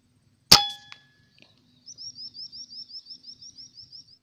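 A single sharp rifle shot about half a second in, with a short metallic ring after it. From about two seconds in, a bird calls a quick run of about a dozen high, rising chirps, roughly six a second.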